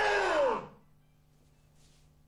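A man's loud kiai shout, under a second long, falling in pitch, as a karate technique lands; after it only a faint steady hum remains.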